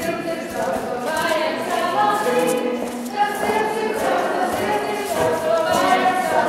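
A group of voices singing a Latvian folk song together, sustaining notes that change step by step as the singers move through the tune.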